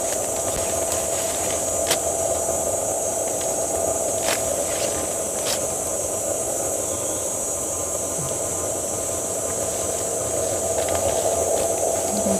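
Rainforest insect chorus: a steady high-pitched buzz with a steady lower tone beneath it, plus a few sharp cracks of footsteps on twigs and leaf litter.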